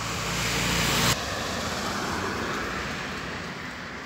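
Road traffic on a street: a car passing by, its tyre hiss slowly fading away. About a second in, a louder rushing noise cuts off suddenly.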